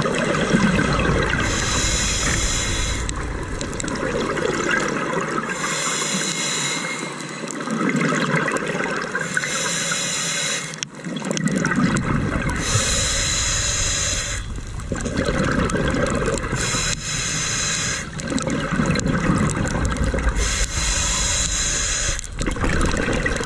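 Scuba regulator breathing heard underwater: a hissing inhale alternates with a rush of exhaled bubbles, about one breath every three to four seconds.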